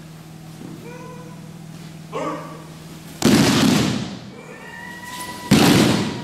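A group of children doing breakfalls together on judo-style mats, their bodies and hands slapping the mats at once. This makes two loud crashes about two seconds apart, each echoing briefly in the hall.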